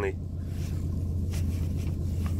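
Car engine idling, a steady low hum heard from inside the cabin, with a faint click about one and a half seconds in.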